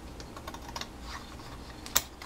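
Long-bladed paper scissors snipping through cardstock in a run of small crisp clicks, with one sharper snap near the end as the cut finishes and the corner comes free.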